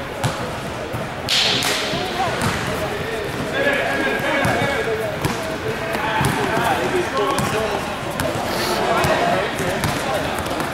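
Basketball dribbled on a gym floor, with scattered bounces and knocks under continuous background chatter and calls from players and spectators, all echoing in a large hall.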